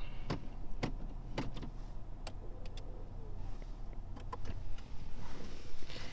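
Honda Civic being shut down after parking, heard inside the cabin. The engine's low idle hum drops away a little past halfway, with several sharp clicks from the car's controls.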